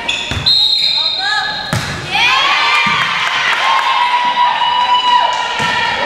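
A referee's whistle blown once and held for about a second and a half to start the serve, among the dull thuds of a volleyball bouncing on and being struck over a gym floor. From about two seconds in, voices shout and call through the rally.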